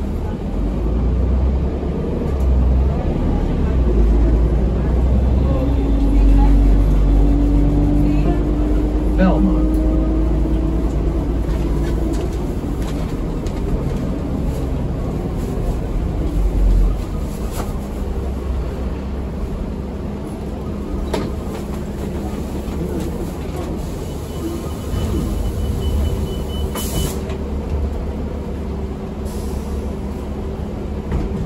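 Cabin sound of a 2006 New Flyer D40LF diesel city bus under way: a deep engine and road rumble, heaviest through the first half with a slightly rising whine in the middle, then easing off as the bus slows. A short hiss comes near the end.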